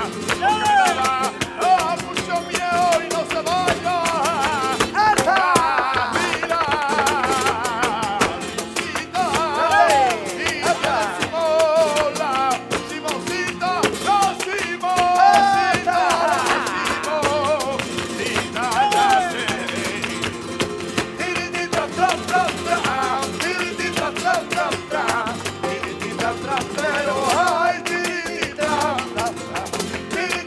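Live flamenco alegrías: a male singer's wavering, melismatic cante over two flamenco guitars, with palmas (hand-clapping) and percussion keeping the rhythm.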